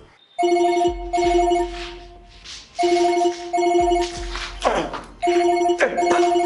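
Telephone ringing in the classic double-ring pattern: two short rings, a pause, then two more, about three pairs in all, with a low hum under each ring. Two sweeping whooshes cut across near the end.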